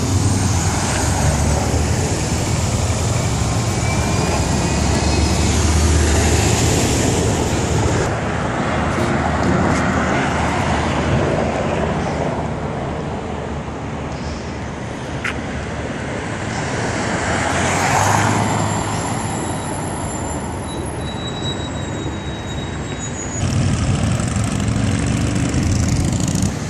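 Road traffic noise: a steady rumble of vehicles and tyres on a busy multi-lane road. It swells briefly about two-thirds of the way through, as a vehicle passes, and gets louder again near the end.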